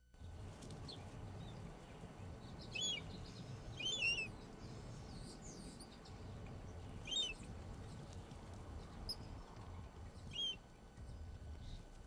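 Quiet outdoor ambience: a low steady rumble with scattered short bird chirps, about six in all, the loudest about four seconds in.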